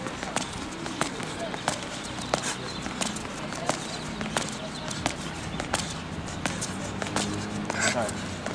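Sneakers striking a hard tennis court in sharp, evenly spaced steps, about three every two seconds, during a side-to-side crossover footwork drill.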